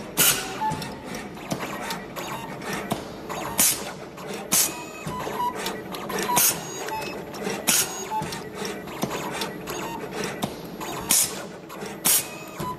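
Automatic cable stripping and cutting machine working through five-core electrical cable, stripping the outer and inner jackets. A steady mechanical whir with small chirps is broken by sharp strokes, about six of them, a second or a few seconds apart.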